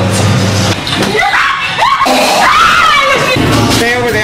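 High-pitched screaming that starts about a second in, over a low droning music track: haunted-house visitors screaming in fright.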